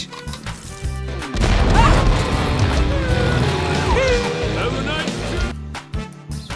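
Animated-film soundtrack laid over the toy play: a short laugh, then, just over a second in, a loud stretch of music and sound effects mixed with voices, which cuts off abruptly near the end.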